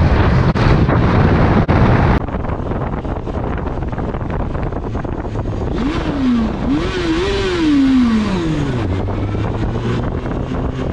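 Wind rush and road noise on a motorcycle helmet camera at speed. After a cut, an engine is revved several times, its pitch rising and falling, and then it drops to a steady idle near the end.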